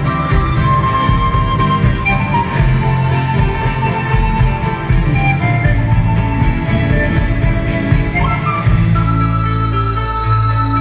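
Live Andean folk music from a band: a melody of long held notes over a strummed string and bass accompaniment.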